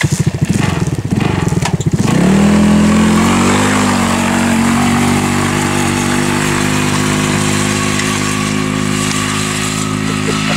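A red dune buggy's engine chugging roughly for about two seconds as it starts up, then revving up and settling into a steady run as the buggy drives off across a grass field.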